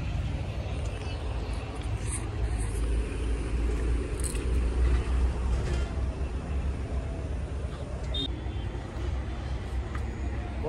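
Low, steady outdoor rumble with a few faint, brief clicks over it.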